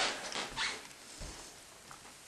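Faint scratchy rustling handling noise, fading after the first half second, as the hand-held camera is moved around.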